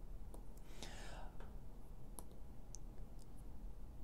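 Faint clicks of small tactile push buttons on a relay timer board being pressed, about five scattered presses, with a soft breath-like hiss about a second in.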